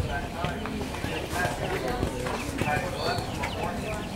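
Horse's hoofbeats, with people talking indistinctly in the background.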